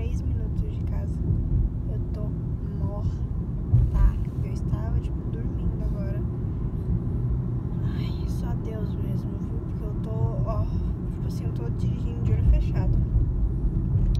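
Steady low road and engine rumble inside a moving car's cabin, with brief louder bumps about four seconds in and again near the end.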